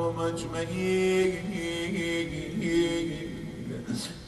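A man's voice chanting in a slow, drawn-out melodic lament, holding wavering notes.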